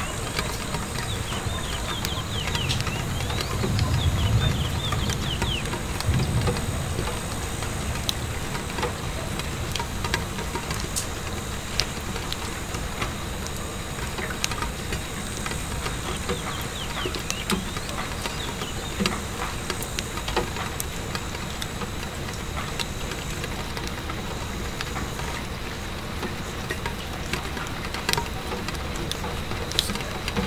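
Rain pattering on window glass mixed with a crackling wood fire: a steady hiss of rain with scattered sharp crackles and pops, and a low rumble that swells about four seconds in and again at six.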